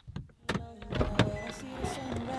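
Car's driver door opened from inside: the interior handle is pulled and the latch releases with a few sharp clicks and knocks, the loudest a little over a second in, amid rustling as someone climbs out.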